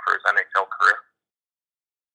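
A man talking for about the first second, then sudden, total silence.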